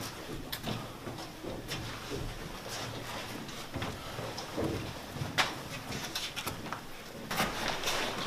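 Soldiers' boots stepping slowly on a concrete floor, with the clatter of carried gear and rifles: short knocks roughly once a second, unevenly spaced.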